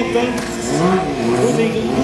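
Quad bike (ATV) engine revving, its pitch rising and falling back about a second in.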